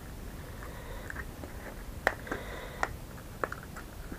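Faint handling of a polystyrene foam packaging tray with parts in plastic bags: a few scattered clicks and crackles in the second half, with a faint thin squeak around two seconds in.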